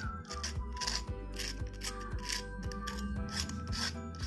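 Steel fork scraping and pressing into the crisp fried crust of aloo tikki, raspy crunching strokes about twice a second; the crunch is the sign of a well-crisped crust. Background music plays underneath.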